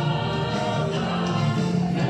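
Music: a song sung by a group of voices together, with held notes.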